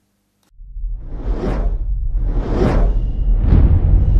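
Cinematic logo-intro sound design: a deep bass rumble swells in about half a second in, with three whooshes sweeping past over it.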